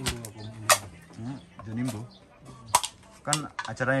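Small plastic zip-lock bags of tablet blister packs being handled on a table: crinkling with a few sharp clicks.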